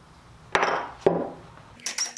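Two hammer taps on a pointed metal marking tool set against a wooden tenon, about half a second apart, each with a short ring. This marks the offset drawbore hole positions.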